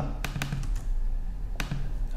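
A few keystrokes on a computer keyboard: separate sharp clicks, two close together early on and another near the end.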